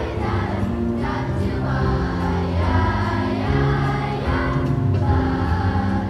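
A fifth-grade children's choir singing together, over an accompaniment that carries a low bass line.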